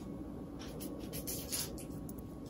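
Light handling noise: a few short, soft scratchy rubs and rustles from a hand brushing over cardboard and paper packaging.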